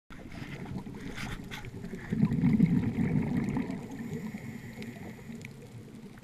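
Scuba diver's exhaled breath bubbling out of the regulator underwater, heard through the camera housing as a gurgling rumble. It swells about two seconds in and fades after about three and a half seconds.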